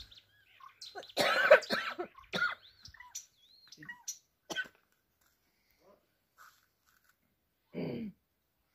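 A person coughs about a second in, with a few high small-bird chirps around it.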